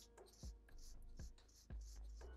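Felt-tip marker scratching across paper in quick short hatching strokes, about two or three a second, faint, over quiet background music with a soft beat.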